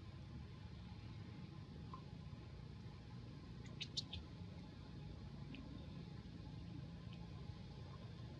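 A few brief high squeaks from a juvenile long-tailed macaque at play, about four seconds in, over a faint steady low rumble.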